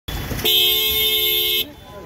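A car horn sounded once and held steady for just over a second, then released.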